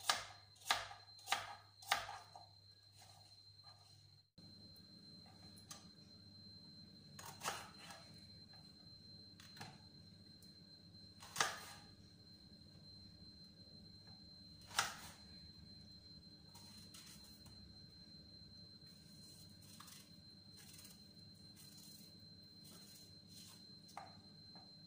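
Kitchen knife striking a plastic cutting board while cutting apples: four quick chops in the first two seconds, then single sharp knocks every few seconds as apples are halved and trimmed.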